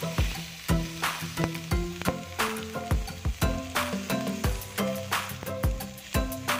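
Background music with a steady beat over the sizzle of diced carrot and garlic frying in oil in a pan as they are stirred.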